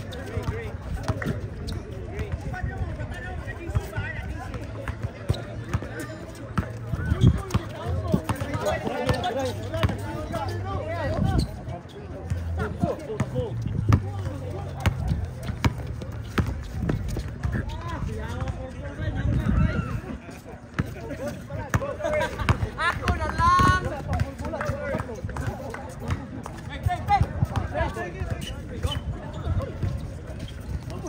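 A basketball bouncing on a hard outdoor court during play, mixed with players' indistinct shouts and talk.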